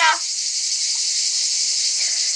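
Steady, high-pitched buzz of cicadas singing in the trees, an even hiss with no break.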